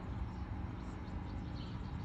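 Steady outdoor background noise, mostly a low rumble, with a faint short high chirp near the end.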